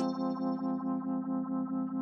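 Organ preset on the AAS Player software synth sounding one held chord, its level pulsing steadily about four times a second.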